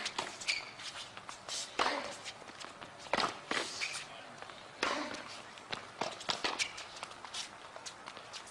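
Tennis point in play on a hard court: sharp racket hits and ball bounces, a second or so apart, with sneakers squeaking on the court surface.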